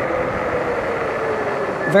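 Fat-tyre electric bike rolling along pavement: a steady rush of tyre and wind noise with a faint, even hum under it.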